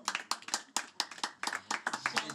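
Hand clapping by a small seated group in a quick, steady rhythm, about six claps a second.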